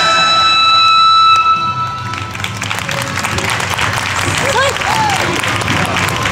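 Recorded dance music from a PA speaker ends on a held final chord that cuts off about two seconds in, followed by the audience applauding, with a few voices calling out.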